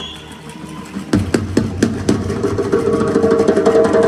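A live band played through an arena PA and heard from the audience seats. The first second is a quiet passage. About a second in, the drums come in with a handful of heavy hits, and then the band carries on louder, with a held chord and fast cymbal ticks.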